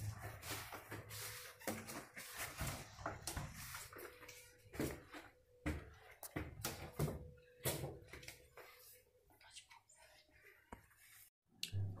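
Squeegee and floor cloth being worked over a wet ceramic-tile floor, with irregular scrapes, knocks and flip-flop footsteps, thinning out near the end.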